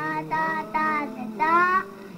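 High-pitched, child-like singing voice in a comic novelty song, holding a few notes with one sliding upward near the end.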